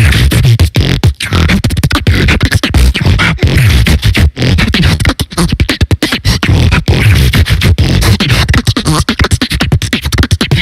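Live beatboxing into a microphone: a fast stream of sharp mouth-percussion hits over a deep, nearly continuous bass.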